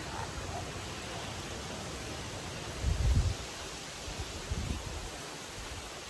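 Steady outdoor wind noise with rustling, and low rumbling wind buffets on the microphone about three seconds in and again briefly near the fifth second.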